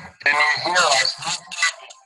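Speech only: a person talking, with words the recogniser did not catch.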